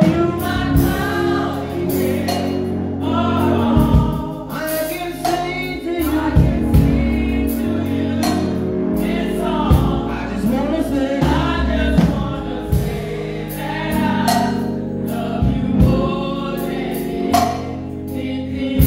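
Live gospel praise singing: a male lead and women's voices singing together into microphones, over held instrumental chords with frequent percussion hits.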